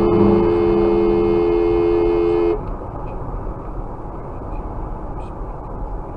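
Car horn sounding a steady two-note blast held for about three seconds, cutting off about two and a half seconds in; after it, the steady rumble of road noise inside the moving car.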